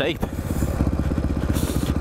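Dirt bike's single-cylinder four-stroke engine running at low revs, an even chug of firing pulses, as the bike rolls along a steep dirt track.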